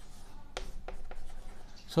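Chalk writing on a chalkboard: faint scratching of the chalk with several short, sharp ticks as strokes are made.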